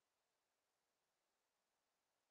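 Near silence: only the recording's faint, steady noise floor, with no events.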